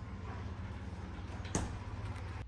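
Steady low hum from an open refrigerator, with a single sharp click about one and a half seconds in.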